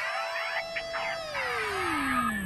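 Synthesized sound effects for an animated logo: criss-crossing electronic sweeps and a few short zaps, over a held tone that begins to glide steadily down in pitch about halfway through.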